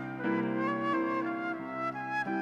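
Concert flute playing a melody, moving to a new note about every half second, over a lower sustained accompaniment.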